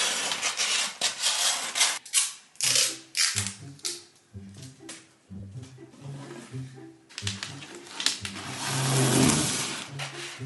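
Wrapping paper crinkling and rustling as it is handled and cut with scissors, loudest in the first two seconds and again building toward the end, over background music with a stepping bass line.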